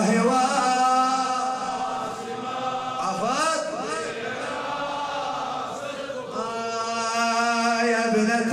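A man chanting a Shia Muharram lament in Arabic, in long held notes, softer and wavering in pitch in the middle.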